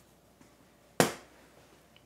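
A single sharp knock about a second in; otherwise a quiet room.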